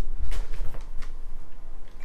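Handling sounds: a few light ticks and taps as a mud flap is lifted out of its box and handled, over a low rumble from the camera being jostled in the hand.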